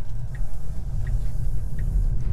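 Steady low road and tyre rumble heard inside the cabin of a moving Tesla Model 3, an electric car with no engine note.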